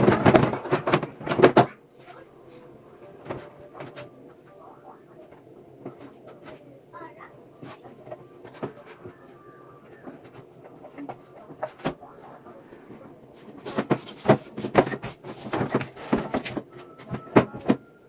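Removable metal grill plates of a sandwich toaster clattering as they are handled and set down at a steel kitchen sink. A quiet stretch with only a few faint knocks comes in the middle, then a dense run of sharp clicks and knocks near the end.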